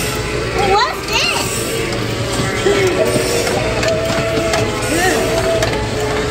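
Animatronic Christmas Minion figure playing its song: steady music with high, gliding voice sounds over it.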